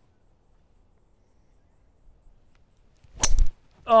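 Near silence, then about three seconds in a single sharp crack of a driver striking a golf ball off the tee, a solid, well-struck hit ('crunched it'). A man's shout of 'Oh!' starts right at the end.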